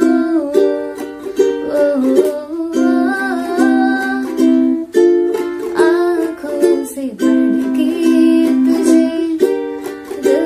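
A woman singing in Hindi while strumming a ukulele through a Dm–C–Gm–C chord progression. The singing is a wordless 'ooh' line at first, then sung lyrics from about the middle.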